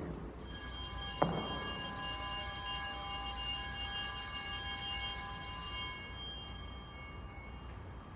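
Altar bells ringing for about six seconds, many clear tones sounding together and then fading out, rung at the elevation of the host at the consecration of the Mass. A short knock sounds about a second in.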